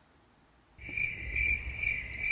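After near silence, a steady high-pitched trill begins abruptly about a second in, pulsing about three times a second, over a low hum.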